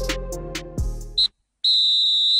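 Background music with a beat fades and cuts off a little over a second in. A short high electronic beep comes just before the cut, then a brief silence, then a longer steady beep on one high pitch near the end.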